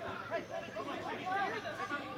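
Several voices talking and calling out over one another: chatter from the players and onlookers at a football match.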